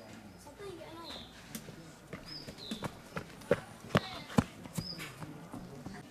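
A bird calling outdoors with short high chirps that drop slightly in pitch, repeated every second or so, over low voices. Three sharp clicks, the loudest sounds, come just past the middle.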